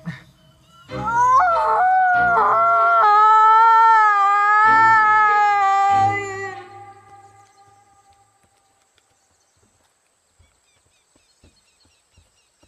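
A woman's long, high-pitched scream of "Aaah!", held for about five seconds with a few short breaks, then dying away to near silence.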